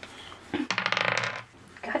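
A game die being rolled on a table: a rapid rattle of clicks lasting under a second.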